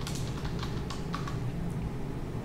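Typing on a computer keyboard: a short run of irregularly spaced key clicks as a word is typed, over a low steady hum.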